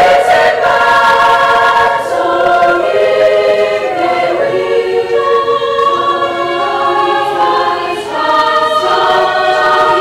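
A school choir singing, holding sustained notes that move from one chord to the next every second or so.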